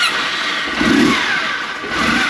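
Kawasaki W650's air-cooled parallel-twin engine running just after starting, through an aftermarket muffler with no inner baffle fitted, loud and open-sounding. It swells about a second in, then settles, during a check for exhaust leaks at the freshly fitted muffler.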